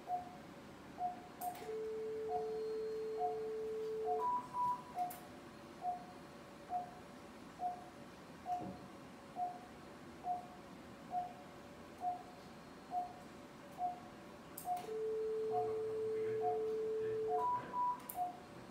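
Operating-room patient monitor beeping at a steady pulse rate, about 1.4 beeps a second. Twice, an electrosurgical vessel-sealing generator sounds a steady lower tone for about two and a half seconds while the instrument is activated, each time ending in a higher double beep as the seal completes.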